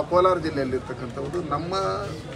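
A man's voice speaking, close to the microphones.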